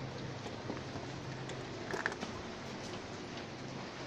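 Steady outdoor seaside ambience: an even rush of wind and surf with a low steady hum, a few faint clicks, and a brief faint distant voice about two seconds in.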